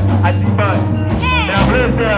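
Choir of women singing over amplified musical accompaniment, with a held low bass line and percussive beats.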